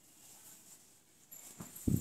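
Hands handling a folded stack of silk dress fabric: a faint rustle, then a few low thumps near the end as the cloth is spread and patted flat.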